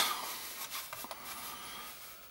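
Faint handling noise: the plastic case of a Gotek floppy drive emulator being turned around on a textured work mat, with a couple of light taps.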